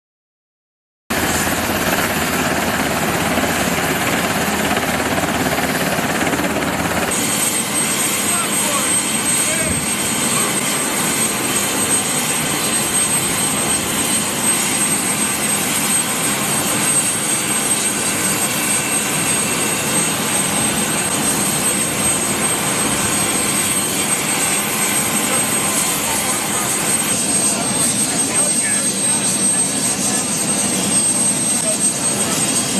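Presidential helicopter parked with its turbine engines running, a loud steady noise. A steady high whine joins in about seven seconds in.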